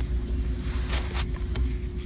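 A steady low rumble with a thin constant hum, and a few light plastic clicks about a second in as a packaged plastic baby bottle is handled.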